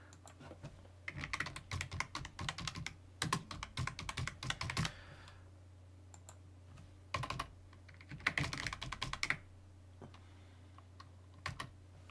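Typing on a computer keyboard: quick runs of key clicks in several bursts with short pauses between them.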